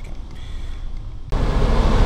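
A faint low hum, then, a little over a second in, a sudden switch to the louder steady low rumble of the motorhome's 8.1-litre Vortec V8 idling, heard from inside the cab.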